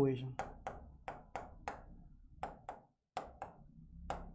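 A pen tip tapping and clicking on the screen of an interactive whiteboard while words are written by hand: about ten short, sharp taps roughly a third of a second apart, with a brief pause near three seconds.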